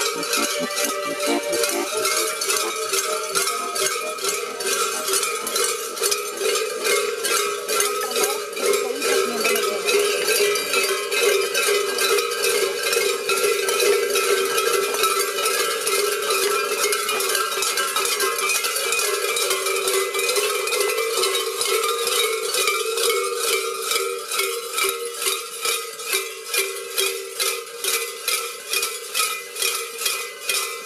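Cowbells worn on the belts of carnival masked figures, clanking continuously with each step as the wearers walk. Toward the end the clanks settle into an even walking rhythm of about two strokes a second.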